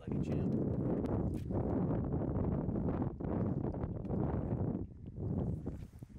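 Wind buffeting the microphone, a dense low rumble that eases about five seconds in.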